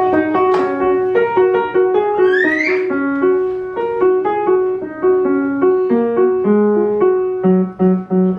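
A child playing a simple tune on a Yamaha upright piano: a steady run of single notes, a melody above a repeated middle note, with a few lower notes near the end.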